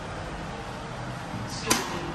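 Steady running noise inside an iFE lift car, then a single sharp clunk near the end as the car arrives at the floor.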